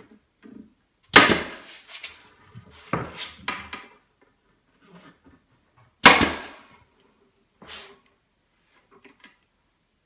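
Pneumatic staple gun firing staples into a wooden frame: a series of sharp cracks, the loudest about a second in and again about six seconds in, with softer shots around three seconds and near eight seconds.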